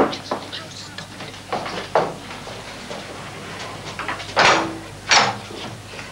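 Scattered knocks and clunks as a house's front door is unlatched and opened; the two loudest clunks come near the end, about a second apart.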